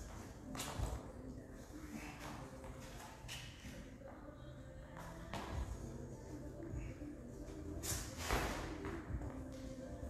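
Faint background music, with a few short thuds and shuffles, the loudest about eight seconds in.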